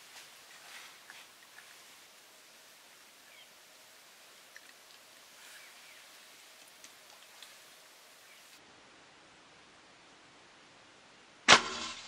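Faint outdoor background with a few small ticks, then a single loud, sharp rifle shot about a second before the end, ringing out briefly.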